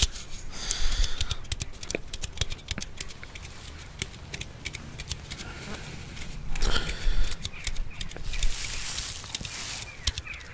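A person drinking from a can of root beer float close to the microphone: sips, slurps and swallows with many small wet mouth clicks, the loudest gulping coming about two-thirds of the way through.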